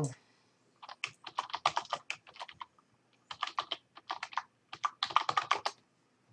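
Typing on a computer keyboard: quick runs of key clicks in three bursts with short pauses between.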